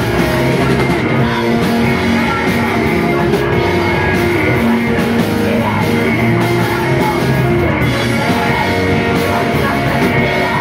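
Emocrust band playing live and loud: distorted electric guitars over a driving drum kit, with no break.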